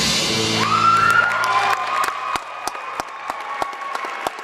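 A rock band's last chord and cymbal crash ringing out, with whistles and whoops from the audience, then scattered clapping from about two seconds in as the ringing fades.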